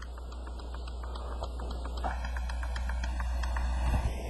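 Faint, evenly spaced light clicks, several a second, from a computer being worked to bring up the next lecture slide, over a low steady electrical hum.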